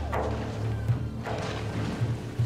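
Tense dramatic background score with low, heavy drum hits, the loudest about a second in.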